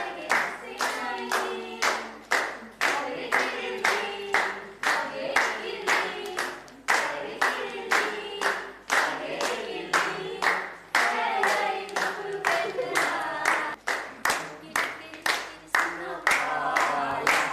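Voices singing a song together over a steady clapped beat of about two to three claps a second.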